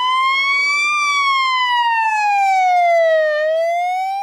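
Ambulance siren sounding a slow wail: one clear tone rising for about a second, falling for about two and a half seconds, then starting to rise again near the end.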